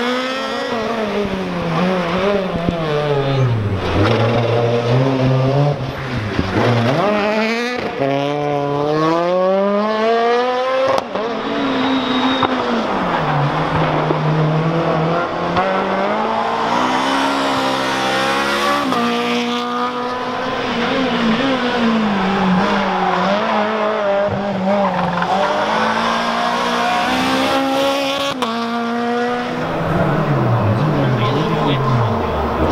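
Renault Clio rally car engines revving hard as the cars run one after another. The pitch climbs steeply through each gear and drops sharply at each upshift, falling away again under braking.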